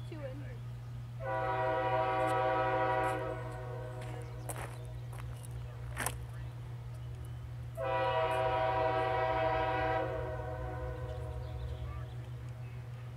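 CSX diesel locomotive's Nathan K5H five-chime air horn sounding two long blasts, each about two seconds, as the train approaches.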